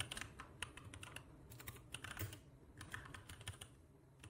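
Faint keystrokes on a computer keyboard as a terminal command is typed: an irregular run of light clicks.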